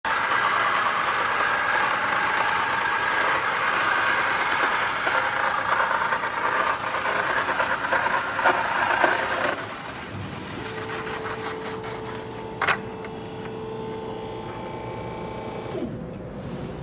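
Guillotine bandsaw blade cutting through a nested stack of galvanized sheet-metal hollow vanes: a loud, dense rasping noise that stops abruptly about nine and a half seconds in as the cut finishes. The saw then runs on with a quieter steady hum while its head cuts off and raises back up, with one sharp click about three seconds later.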